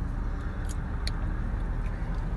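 Steady low rumble of road traffic, with a couple of faint short clicks.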